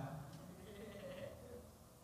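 A brief, faint voice-like sound for about the first second and a half, then near silence.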